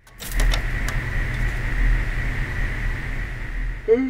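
Old television static: a steady hiss with a low hum and a steady high tone, a few clicks within the first second or so. It ends in a short falling blip and cuts off.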